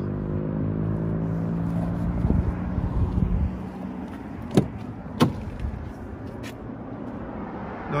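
A vehicle engine's steady hum fades away over the first few seconds. Then come two sharp clicks about half a second apart as a car door is unlatched and swung open.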